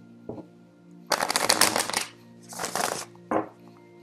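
A deck of tarot cards being shuffled: two fast flurries of card flutter, one a little after a second in and a shorter one near three seconds, with single snaps of the cards before and after, over soft background music.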